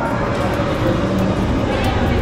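TRON Lightcycle Run roller coaster train running along its track: a steady rushing noise with a faint low hum.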